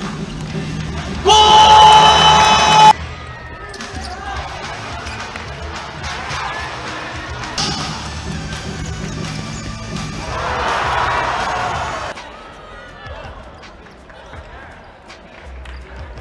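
Indoor futsal match audio: ball kicks and bounces on the hard court floor, cut through near the start by a loud steady horn-like tone lasting about a second and a half. About ten seconds in there is a swell of crowd noise.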